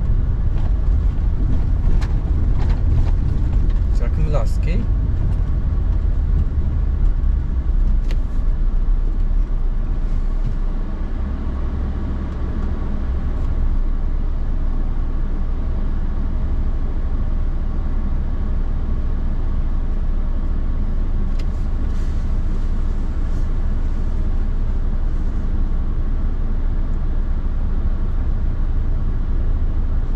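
Car cabin noise while driving through town: a steady low engine and road rumble, with a few brief clicks and knocks.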